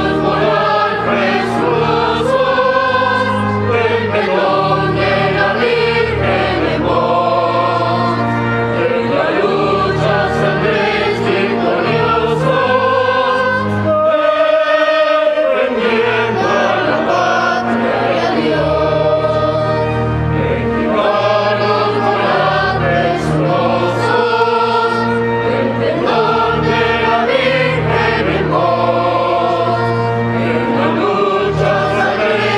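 Choir singing a hymn with organ accompaniment at the close of Mass, the sung voices moving over long held bass notes that drop out briefly about halfway through.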